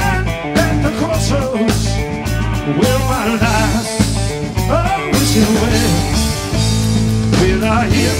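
Live blues-rock band playing loudly: drum kit, bass and electric guitar over a steady beat, with a wavering lead line on top.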